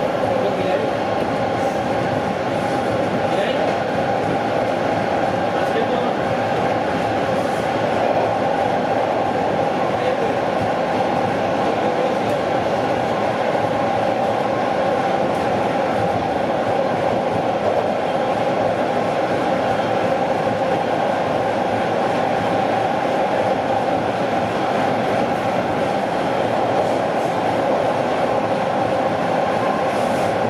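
A Bombardier T1 subway car running at speed, heard from inside the cabin: steady wheel-on-rail running noise with a constant hum, unchanging in level.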